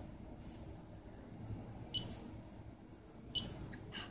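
A Tissot T-Touch Expert watch's side pusher buttons being pressed, giving a few short, sharp clicks. The loudest comes about two seconds in and another near the end.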